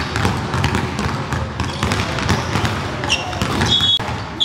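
Basketballs bouncing repeatedly on a hardwood court during shooting practice, with brief high squeaks of sneakers on the floor about three seconds in and near the end.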